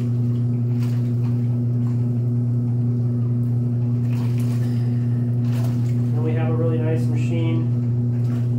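Steady low hum of an electric motor running, unchanging in pitch and level. A person's voice is heard briefly about six seconds in.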